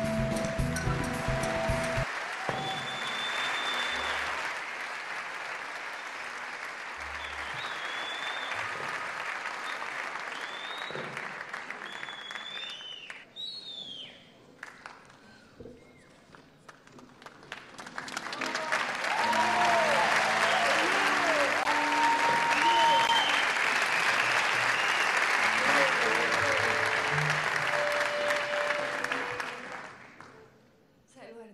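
A concert hall audience applauding and cheering as the orchestra's final chord cuts off about two seconds in. The applause thins out around the middle, then swells back loud with voices calling out and whistles, and fades right at the end.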